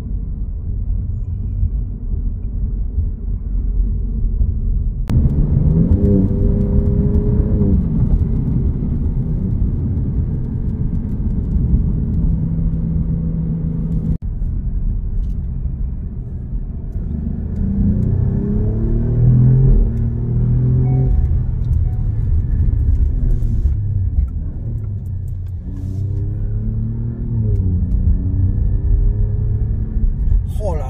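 The Alfa Romeo Giulia Quadrifoglio's 2.9-litre twin-turbo 90-degree V6, heard from inside the cabin under acceleration. It revs up and changes gear in several pulls, over a steady low rumble.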